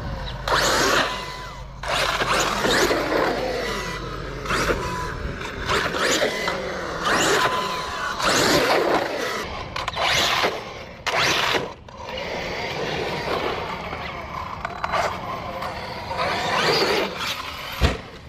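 Arrma Outcast 8S brushless RC truck driven in repeated bursts of throttle. The motor and drivetrain whine rises and falls with each burst, along with tyre noise on concrete.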